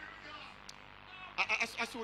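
A man's voice preaching: a pause with faint room sound, then a strained, halting 'I, I, I' about one and a half seconds in.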